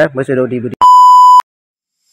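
A single loud, steady electronic beep tone lasting just over half a second, starting about a second in and stopping abruptly, right after a man's speech.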